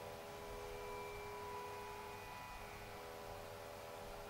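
Faint steady drone of several held tones over a light hiss.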